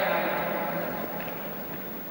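Arena crowd noise, a dense even rustle without clear voices, fading down.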